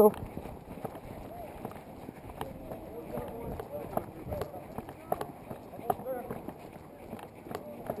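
Footsteps of several people in boots walking on a concrete road, as irregular light steps, with faint voices in the distance.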